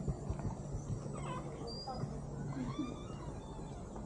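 Birds chirping and whistling in short calls over a steady low hum.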